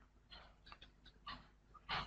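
Faint, short scratching strokes of a digital pen writing on a tablet screen, a few scattered through the pause, with a slightly longer one near the end.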